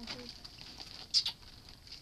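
Light rustling and scratching of hands against a paper poster, with one sharper, louder rustle about a second in.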